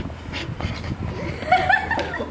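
A person laughing briefly, starting about one and a half seconds in, over a low steady background rumble.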